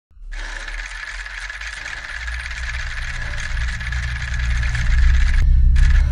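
An intro sound effect: a dense, rattling noise over a low rumble that grows steadily louder. Near the end the rattling noise cuts off suddenly and the low rumble is left.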